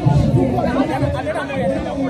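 Several voices talking over one another at close range: overlapping chatter of a small group.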